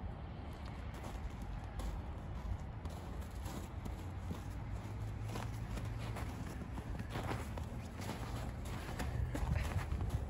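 Faint, scattered footsteps of a small child over a low, steady rumble.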